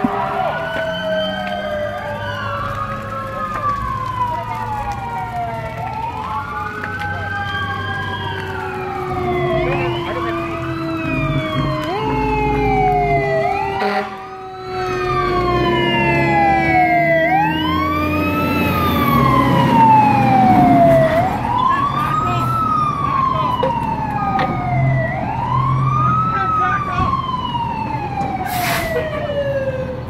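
Fire engine sirens wailing, at least two overlapping, each rising quickly and falling away over about two seconds. A lower siren tone slides slowly down underneath, over a low engine rumble.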